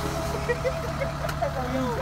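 Kubota combine harvester's diesel engine idling steadily, with faint voices of people talking over it.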